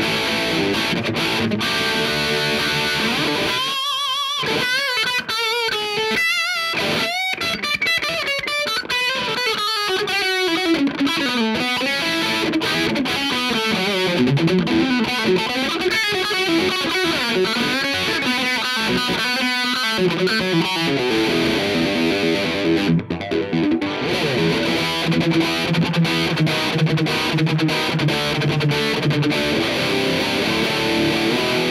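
Electric guitar, a Les Paul-style with humbuckers, played through a Radial Tonebone Hot-British V9 distortion pedal with a thick, dense, tight Marshall-style distortion. It opens with chords, moves after a few seconds to a lead line of bent, wavering notes and a run downward, and ends in chugging riffs.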